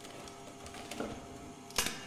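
Light clicks and knocks of objects being handled and searched through, with one sharp knock near the end.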